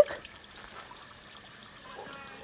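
Faint, steady trickle of water.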